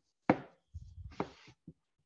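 Two sharp knocks or clicks about a second apart, followed by two fainter ticks, picked up by a video-call microphone.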